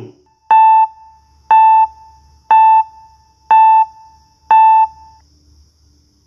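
Countdown timer of a quiz: five short electronic beeps one second apart, all at the same pitch, each starting with a click.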